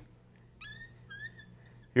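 Dry-erase marker squeaking on a whiteboard in two short strokes, about half a second and a second in.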